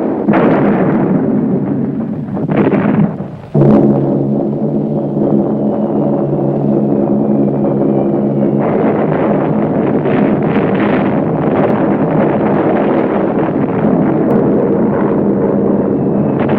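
Archival war-film soundtrack of bombing: dense explosion noise over a steady low drone. The sound dips briefly about three seconds in, then comes back with a sudden loud burst, and a faint falling whistle runs through the middle.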